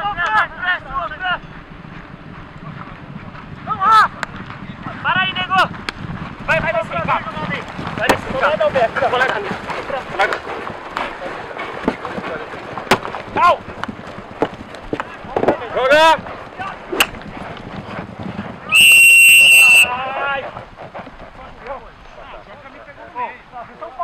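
Polo players shouting short calls to each other, with scattered sharp clicks, then about nineteen seconds in a single loud, steady umpire's whistle blast of about a second, the loudest sound, signalling a stoppage in play.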